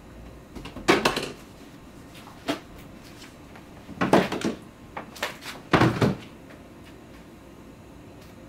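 Kitchen clatter of plastic spice shakers and jars being handled and set down on a shelf or counter. Several sharp knocks come in clusters about a second in, around four seconds, and around six seconds.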